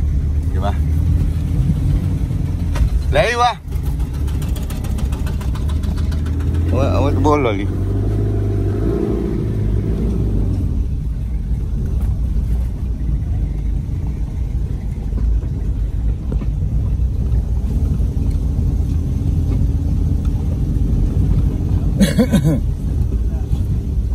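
Car driving on a rough dirt road, heard from inside the cabin: a steady low rumble of engine and tyres.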